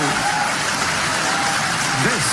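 Audience applauding steadily as a snooker maximum 147 break is completed.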